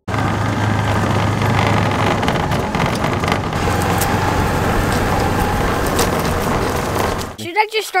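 Utility side-by-side (UTV) driving fast across a grass field: a steady engine drone under loud rushing wind and tyre noise, cutting off suddenly near the end.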